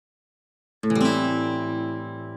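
An acoustic guitar strums a single Am7 chord about a second in and lets it ring, slowly fading.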